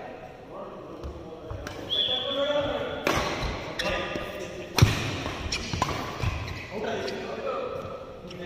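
Badminton rally in a large hall: sharp racket strikes on a shuttlecock, the loudest a little before five seconds in, with thuds of players' feet on the court floor.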